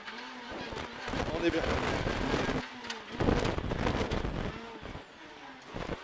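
Renault Clio R3 rally car's four-cylinder engine heard from inside the cockpit, pulling hard with its pitch rising and falling. It drops briefly about three seconds in, picks up again, and eases off near the end.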